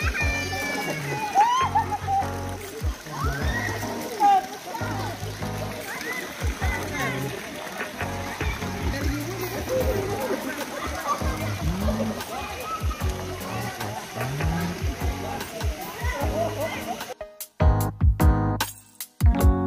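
Swimmers splashing in a busy swimming pool, with a mix of voices over the water noise and background music running under it. A little before the end the pool sound cuts off abruptly and only the music carries on.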